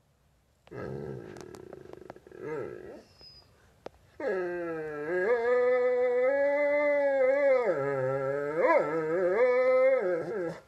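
A dog vocalizing: a low grumbling growl for about two seconds, then, from about four seconds in, a long, loud howling whine that wavers up and down in pitch.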